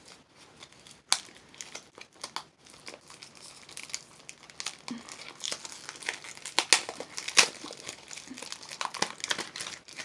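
Plastic toy packaging crinkling and tearing in irregular sharp crackles as it is worked open by hand, with the loudest crackles about a second in and around seven seconds in.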